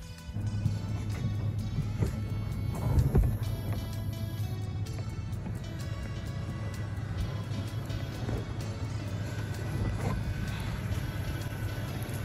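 Background music over the steady low drone of a truck driving down a road.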